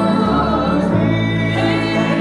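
A woman singing a gospel song into a microphone with grand piano accompaniment, holding long notes, with vibrato on a held note near the end.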